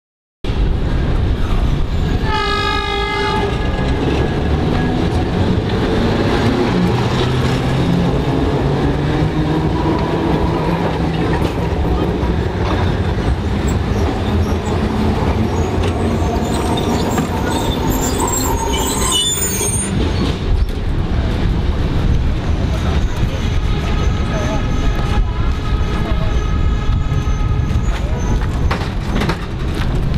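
An Alexandria Ramleh line tram and street traffic run continuously at a tram stop. A horn sounds briefly about two seconds in, a high squeal comes around the middle, and a longer horn sounds near the end.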